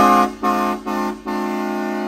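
Pickup truck horn honking: three short blasts and then a long held one, all on the same steady pitch.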